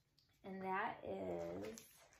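A woman's wordless, drawn-out vocal sound, like a hum, starting about half a second in and lasting just over a second, in two joined parts.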